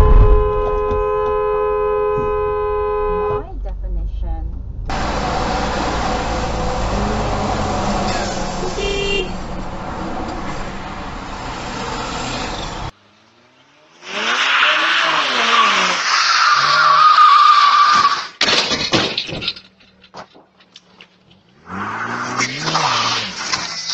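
A car collision: a loud crash impact, then a car horn sounding steadily for about three seconds. Later come several seconds of steady road noise, then a second loud noisy stretch with a wavering whine.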